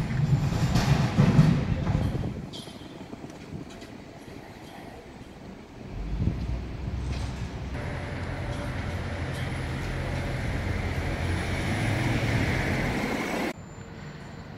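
Street traffic: a motor vehicle passing close by with a loud low rumble, then after a quieter stretch a steady engine hum from traffic that grows slowly louder and cuts off suddenly near the end.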